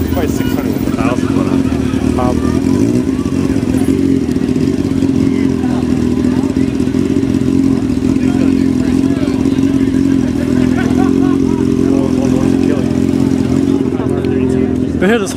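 An engine running steadily at one pitch, not revving, with faint crowd voices over it.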